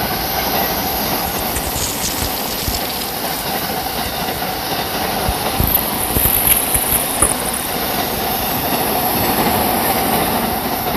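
Yokosuka Line electric commuter train passing through the station: a steady rumble of wheels on rail, a few clacks over rail joints, and a high hissing squeal that is strongest around the middle.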